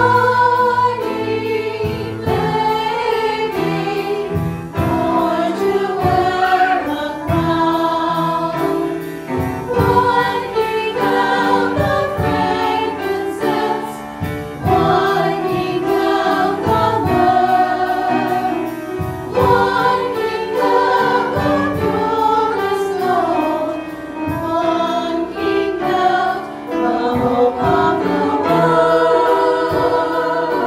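A small group of women singing a hymn in harmony into microphones, with piano accompaniment.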